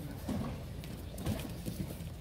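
Bare feet thudding and shuffling on a padded mat in a few soft, irregular knocks as people move around and get up during aikido practice.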